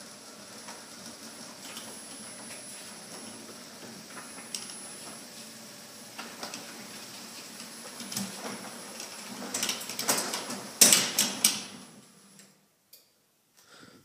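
Overhead garage door opener running as it closes the sectional door: a steady motor and drive hum, with louder rattling and clatter near the end as the door comes down, then the motor stops.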